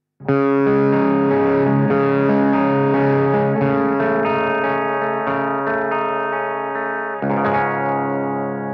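Single-cut, Les Paul-style electric guitar played through the Bass Instrument channel of a Fender blackface Bassman 50-watt valve amp head, with no pedals. A string of ringing chords starts about a quarter second in and changes every second or so. A new chord struck near the end is left to ring.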